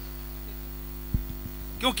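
Steady low electrical mains hum from the microphone and sound system, with a single short low thump about a second in. A man's voice comes back in near the end.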